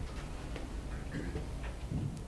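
Quiet lecture-room background: a steady low hum with a few faint, irregular ticks and clicks.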